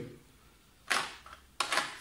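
Two short plastic clicks about a second in and again near the end, as a trimmer's plastic comb guard is taken off and handled.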